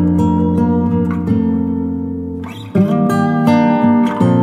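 Background music of strummed acoustic guitar; the chords die away about two-thirds of the way through, then a fresh strum starts the next phrase.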